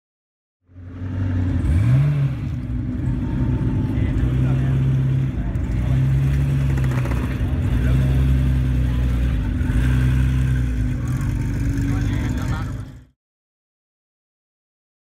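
Gunther Werks Porsche 993 400R's 4.0-litre flat-six revving quickly about two seconds in, then running at low revs as the car rolls off. The engine note swells and eases several times.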